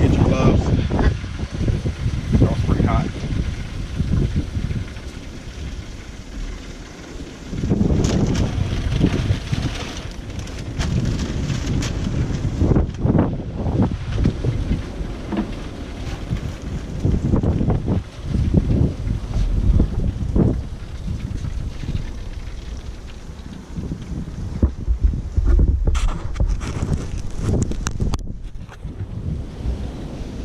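Wind buffeting the microphone in an uneven low rumble, with scattered knocks and rustles from the wrapped ribs being handled.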